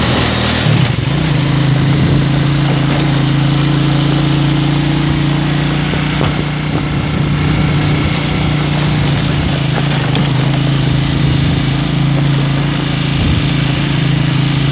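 Motocross bike engine running steadily while riding a gravel forest road, heard from on the bike. Its note changes about a second in, then holds a steady pitch.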